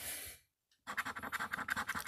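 A coin scratching the coating off a paper scratch-off lottery ticket in quick back-and-forth strokes, about a dozen a second, starting just under a second in.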